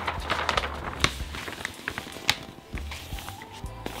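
A large sheet of sublimation transfer paper rustling and crackling in irregular clicks as it is laid and smoothed by hand over a quilted blanket, with music playing underneath.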